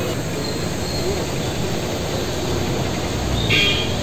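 Steady street traffic noise. About three and a half seconds in, a vehicle passes close with a swell of rumble and a brief high-pitched sound.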